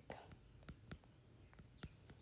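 Several faint, sharp clicks of a stylus tapping on a tablet's glass screen while a word is handwritten, over near silence.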